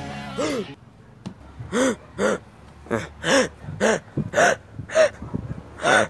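A person's voice making a run of short, high-pitched vocal sounds, each rising and falling in pitch, about two a second.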